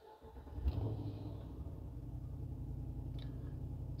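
The 6.4-litre Hemi V8 of a 2022 Ram 2500 Power Wagon starting at the push of the button, catching at once with a brief flare in revs, then settling into a steady low idle, heard from inside the cab.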